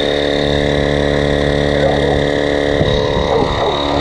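Handheld electric inflator pump with a digital pressure gauge running steadily as it pumps air into an inflatable boat's tubes, the pressure climbing. It gives an even motor hum with several steady tones.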